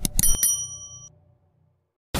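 Subscribe-button animation sound effects: a few quick clicks followed by a bright bell ding that rings for about a second and fades out.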